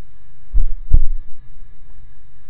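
Two loud, low thumps about 0.4 s apart, starting about half a second in, the second slightly stronger, followed by a few smaller knocks, over a faint steady hum.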